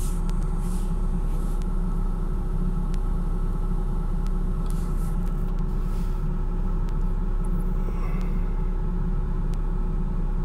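Steady low machine rumble with a faint constant hum over it, and a few faint clicks.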